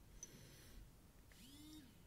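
Near silence: room tone, with a faint tick near the start and a faint short pitched sound, rising then falling, past the middle.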